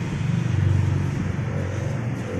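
A motor vehicle's engine running, a low rumble that swells about half a second in and eases off again.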